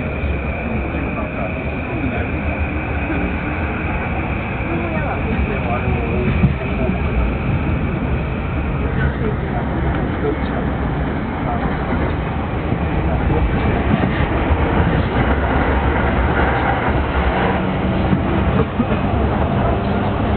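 Interior noise of a JR Yamanote Line commuter train pulling out and running between stations: a steady rumble of wheels and motors. A steady high tone runs for about the first nine seconds and then stops, and the running noise grows louder in the second half.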